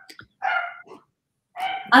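A dog barking twice, about a second apart, picked up through a video-call microphone.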